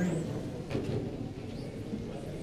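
Background noise of a large indoor hall with faint distant voices and a light knock about three quarters of a second in.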